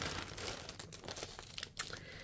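Faint crinkling of plastic product packaging being handled, with a few sharper crackles, the strongest near the end.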